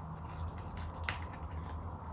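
Close-miked ASMR eating sounds of grilled chicken being chewed: scattered soft, wet clicks, with one sharp click about a second in. A steady low hum runs underneath.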